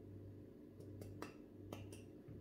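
A few faint, light clicks of a metal espresso portafilter being handled and picked up, over a low steady hum.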